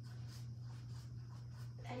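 Faint scratchy strokes of paintbrushes laying acrylic paint on canvas, over a steady low hum. A voice starts right at the end.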